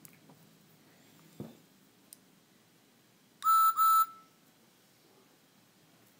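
Electronic steam-whistle sound from a talking Thomas & Friends Take-n-Play Edward die-cast toy engine, played through its small speaker: two short toots in quick succession about halfway through, after a soft knock.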